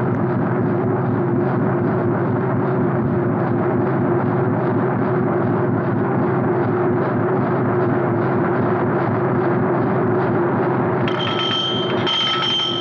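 Ship's engine running steadily at half speed in the engine room: a dense, even drone with a constant low hum and a faint regular pulse. Orchestral music comes in about a second before the end.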